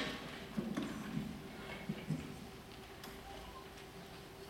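Quiet concert hall before a piece begins, with a faint steady hum. A sharp click right at the start is followed by a few soft low knocks and shuffles over the next two seconds or so.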